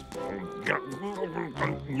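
A cartoon crab character's voice making short wordless vocal noises while he eats a mouthful of greens, with soft background music under it.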